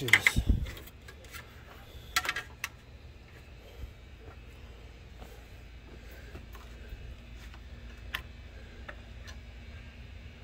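Scattered clicks and knocks from hands working around a car's engine bay, loudest in the first second and again in a short cluster about two seconds in, over a low steady hum.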